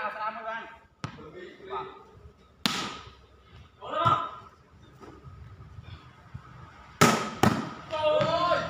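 A ball kicked hard several times: one strike about a second in, a louder one near 3 seconds, and two in quick succession near the end, each a sharp smack. Players shout between the kicks, loudest about 4 seconds in.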